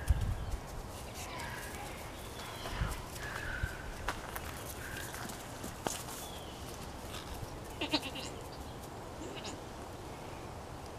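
Newborn goat kid bleating in several short, high calls spread through the moment. A few sharp clicks fall in between.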